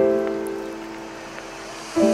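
Slow, soft background song with no voice in this stretch: a chord struck at the start rings and fades away, and a new chord comes in near the end.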